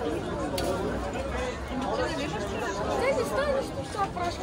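Chatter of several people talking at once, voices overlapping throughout, with a single brief click about half a second in.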